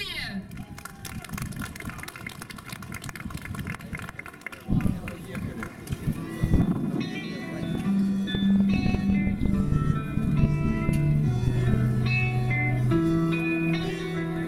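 Instrumental introduction of a song starting about five seconds in over the outdoor stage loudspeakers, with long held notes that step from pitch to pitch. Before it, unsettled background noise from the open-air audience.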